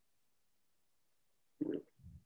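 Near silence, then a brief gulp of water being swallowed from a drinking glass a little over one and a half seconds in, with a fainter low sound just after.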